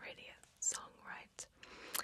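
A woman whispering softly, breathy words with no voice in them and a few sharp hissing s-sounds.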